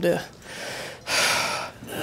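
A person breathing audibly close to the microphone: a soft breath, then a louder, breathy gasp about a second in.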